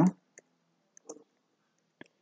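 Computer keyboard keystrokes as a commit message is typed: a few faint, sparse clicks spread over the two seconds.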